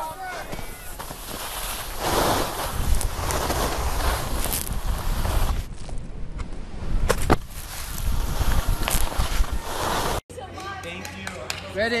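Wind rushing over the microphone and skis scraping on snow during a fast downhill ski run, with a few sharp knocks. The rushing cuts off abruptly about ten seconds in.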